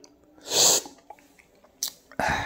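A man sipping coffee: one short, noisy slurp about half a second in, then a brief puff of breath near the end.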